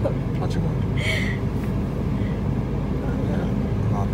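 Steady low hum of a car's engine idling, heard from inside the cabin while the car stands still.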